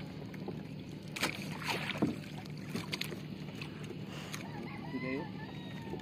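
Small wooden outrigger boat under way on calm water, with splashing and a few sharp knocks against the hull over a low steady hum. A short rising-and-falling call sounds about five seconds in.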